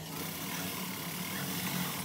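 Brother industrial sewing machine running steadily as it stitches, over the low steady hum of its motor.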